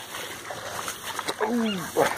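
A dog barking: one drawn-out call that falls in pitch, about one and a half seconds in.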